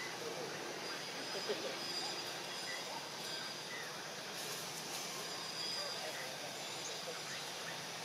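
Steady outdoor background hiss, with a few faint, brief voice-like calls and a thin high whine that comes and goes.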